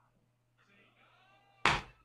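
Tense near quiet with a faint low electrical hum and a faint whining, voice-like sound, then near the end one sudden loud burst of breath into the microphone: a sharp exhale of dismay.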